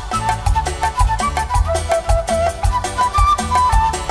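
Live band playing instrumental dance music: a steady beat with bass pulses under a high melody line that steps from note to note.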